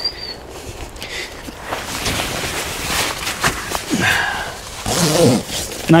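Rustling and scuffing of a pop-up hide's fabric and of feet on grass as a person pulls off shoes and climbs in through the door, in irregular crinkles and knocks. A bird whistles briefly at the very start.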